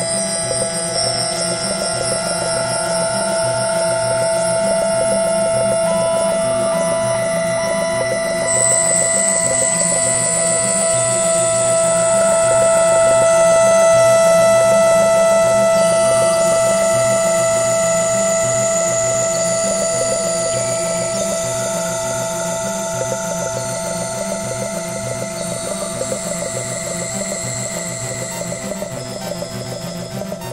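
Ambient electronic music played on synthesizers. Long held chords sit over a fast pulsing low line, with high, thin tones stepping from note to note above. It swells to its loudest about halfway through, then eases off.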